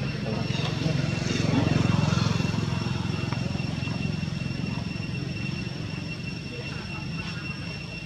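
A steady low engine-like drone, swelling slightly about two seconds in and easing off toward the end, under a thin steady high whine and faint background voices.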